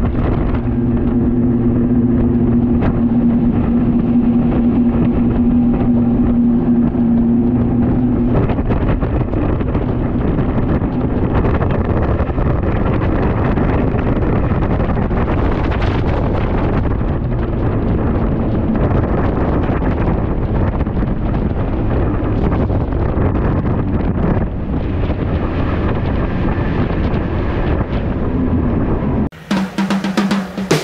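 Twin 300 hp outboard motors on a Blue Wave 2800 Makaira center-console boat, opened up to speed, with wind and rushing water over them. A steady engine hum is plain for the first eight seconds or so, then fades into the rush of wind and water.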